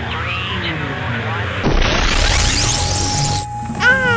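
Logo sting sound effect: a rising whoosh that builds over about a second and a half, is the loudest part, and cuts off abruptly, over background music. A child's high squeal, falling in pitch, begins right at the end.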